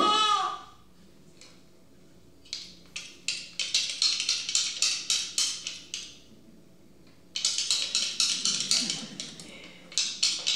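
Quick, sharp taps, about three or four a second, in two spells with a pause of about a second between them.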